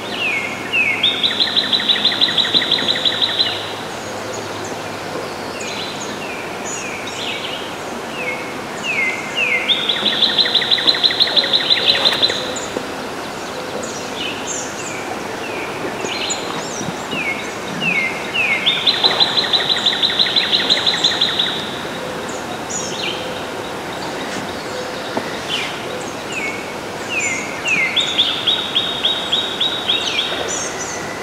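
A songbird singing the same song four times, about every nine seconds: a few quick falling notes, then a long, fast, high trill lasting two to three seconds. Fainter chirps from other birds and a steady hiss of swamp ambience fill the gaps.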